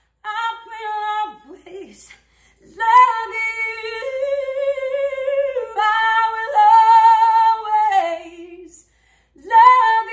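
A woman singing unaccompanied, her guitar silent: a short phrase near the start, then long held notes with a wide vibrato from about three seconds in, breaking off briefly near the end before she comes back in.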